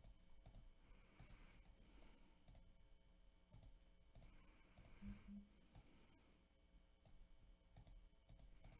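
Faint, irregular clicks of a computer mouse, about a dozen over several seconds, against quiet room tone.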